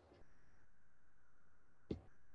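Faint room tone with a single short, sharp click near the end.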